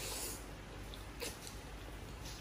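A person slurping instant noodles: a hissing slurp as the strands are sucked into the mouth, then a few wet mouth clicks about a second in.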